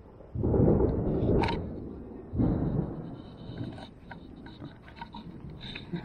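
Thunder: two rumbling peals, one starting about half a second in and a second about two seconds later, each fading away over a couple of seconds.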